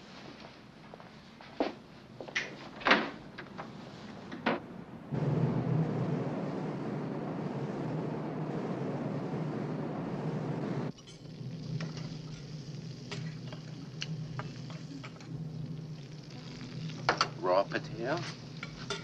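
Scene sounds of a drama soundtrack. First a few short clinks. About five seconds in comes a steady rushing noise with a low hum, the sound of a ship at sea, which cuts off suddenly about six seconds later. Then come kitchen sounds: dishes and utensils clinking and food sizzling, busiest near the end.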